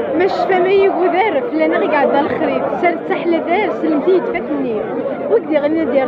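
A woman speaking into a handheld microphone, with crowd chatter behind her.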